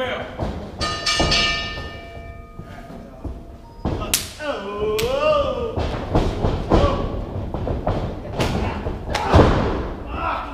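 A wrestling ring bell rings about a second in, its tone fading over a second or so, signalling the start of the match. Then come scattered thuds on the ring mat, the loudest near the end, with a wavering shout in the middle.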